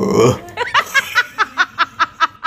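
A man laughing in a run of short, evenly spaced laugh pulses, about five a second, after a brief rough throaty sound at the start.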